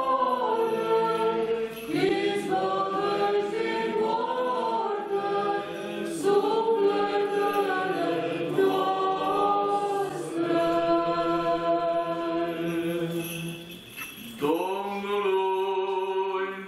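Orthodox liturgical chant sung by a group of voices in slow, sustained phrases, with a short break about fourteen seconds in before the singing picks up again. It is sung at the Litiya, the rite in which the loaves, wheat, wine and oil are blessed.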